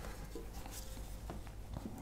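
Faint, light scraping of a small steel Venetian trowel working a thin layer of decorative paint, with a few soft ticks.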